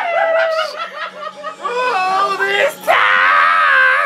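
Young men laughing hard and shrieking, in short choppy bursts, then one long high-pitched shriek held through the last second.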